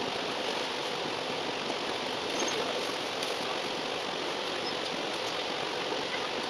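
Running noise of an Alexander Dennis Enviro400 double-decker bus, heard from the upper deck, sped up four times so that it becomes a steady, even hiss.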